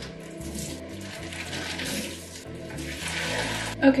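Tap water running steadily into a large stainless steel stockpot, filling it, with a slight swell in the second half.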